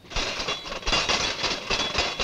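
A dense, rapid rattling clatter of many small clicks.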